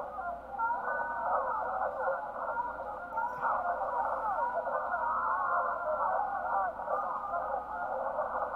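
Film soundtrack played back filtered to a narrow midrange band, which makes it thin and muffled; it is full of busy, overlapping gliding pitched sounds.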